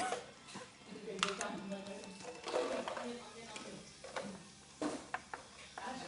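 A person's voice in short, broken snatches, with a few sharp clicks and taps as small plastic figurines are handled and knocked on a tabletop.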